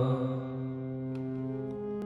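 Harmonium holding a steady chord of devotional kirtan between sung lines, as the singing voice fades out in the first half-second.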